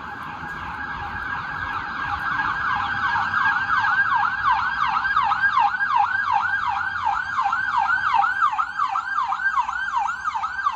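MedStar ambulance siren in a fast yelp, sweeping up and down about three times a second, growing louder over the first few seconds as the ambulance approaches on an emergency run.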